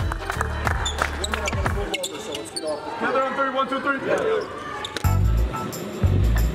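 Background music with a heavy bass under indistinct voices, with repeated sharp knocks.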